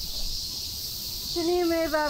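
Steady high-pitched insect drone, a continuous hiss from the surrounding trees. A person's voice speaks briefly from about one and a half seconds in.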